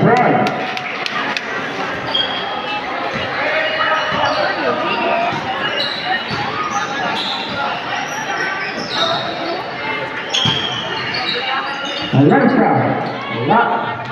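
Basketball game in a large covered court: the ball bouncing on the hard floor among shouts and chatter from players and spectators, with the hall's echo.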